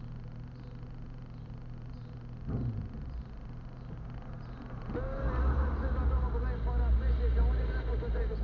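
Car engine idling steadily from inside the cabin, with a brief thump about two and a half seconds in; about five seconds in a louder low rumble sets in as the car pulls away.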